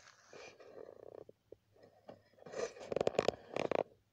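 Handling noise from a camera being turned and repositioned: rubbing and scraping at first, then a quick run of clicks and knocks, loudest near the end.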